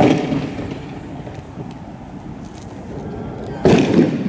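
Two loud bangs from blasts in a street clash, one at the very start and another about three and a half seconds in, each followed by a short rumbling decay.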